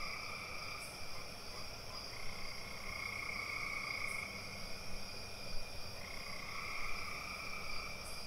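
Nature ambience sound effect: a steady chorus of frogs and insects, with no music under it.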